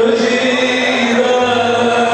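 A voice chanting a slow, drawn-out melody over a steady held drone.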